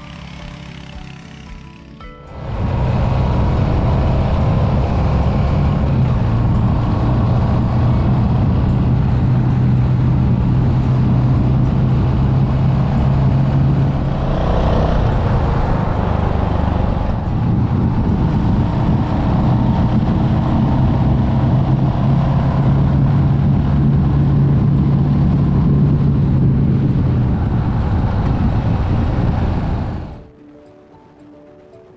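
Onboard ride sound of a Royal Enfield Hunter 350's single-cylinder J-series engine at a steady cruise, under a constant rush of wind. It comes in loudly about two seconds in, and its low note shifts in pitch a few times with changes of speed or gear.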